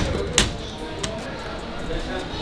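A sharp click about half a second in and a fainter click about a second in, over background music and room noise.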